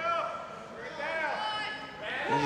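Voices shouting: a short call at the very start and another, longer one about a second in.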